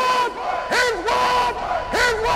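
A crowd of voices shouting together in unison: repeated cries that swoop up and are held, one of them for nearly a second, a new one starting about every three-quarters of a second.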